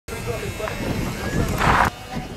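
Voices talking over background noise, with a louder, noisy burst near the end that cuts off suddenly.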